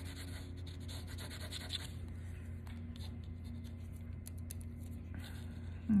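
Graphite of a mechanical pencil scratching on paper in quick shading strokes, coming in patches, over a low steady hum.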